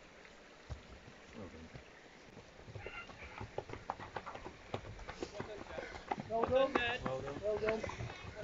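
Runners' footsteps knocking on a footbridge deck, starting a few seconds in and coming thicker as more runners cross, with voices calling out near the end.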